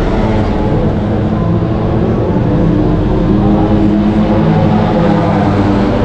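Bristol Maxie 400 scooter's engine running steadily as it rolls along at low speed, an even drone.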